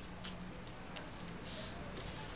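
A square of origami paper being folded and creased by hand: two sharp paper ticks, then a short rustle of paper and fingers sliding across it about a second and a half in.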